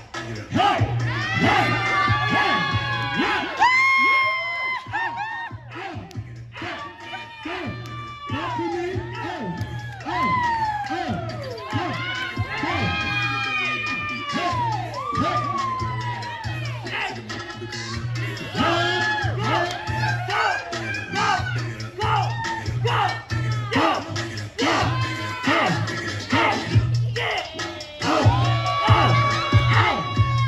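Hip-hop dance music with a steady thumping bass beat played over a loudspeaker, while a group of onlookers, children among them, cheer, whoop and shout along.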